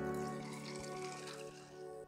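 Claret cup (red wine and soda water) being poured over crushed ice in a wine glass, a liquid pour that fades out about a second and a half in, under steady background music.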